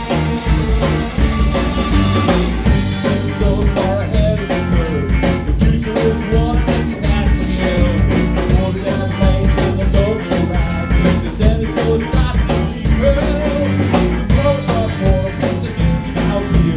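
Live rock band playing: electric guitars, bass and drum kit with a man singing. From about two seconds in until near the end, the drums keep a steady quick tick, about four a second.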